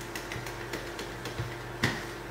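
Handheld whiteboard eraser rubbing marker ink off the board: faint, light scrubbing ticks, with one sharper click near the end.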